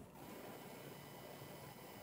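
Quiet outdoor ambience: a faint, steady hiss with no distinct sound event.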